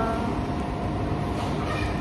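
Steady low rumbling background noise, with no distinct event standing out.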